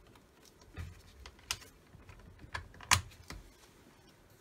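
Plastic parts of an Astro M1C label printer's service station being handled and fitted back into their tray: a handful of separate sharp plastic clicks and knocks, the loudest about three seconds in.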